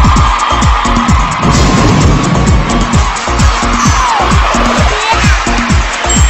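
Upbeat electronic dance music with a heavy, steady bass-drum beat whose kicks drop in pitch.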